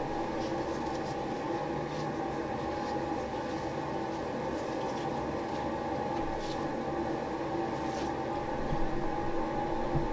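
Steady machine hum, like a small motor or fan running, holding several even tones, with a few faint ticks.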